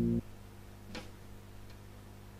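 The held final chord of the rock song, guitars and drums together, cuts off suddenly just after the start. After that the room is quiet except for one light click about a second in and a fainter tick later, as the drumsticks are handled over the electronic drum kit.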